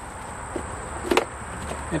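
A single sharp knock about a second in, with a smaller click shortly before it, over a quiet background with a steady faint high-pitched tone.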